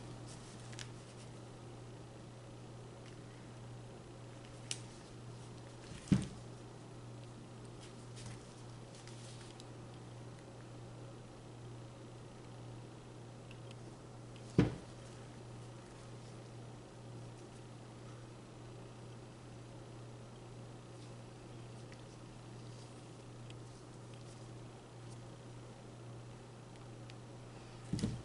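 A low steady hum under near quiet, broken by two sharp knocks about six and fourteen and a half seconds in, the loudest sounds: a stretched canvas being tilted by hand and its wooden frame bumping down on the table.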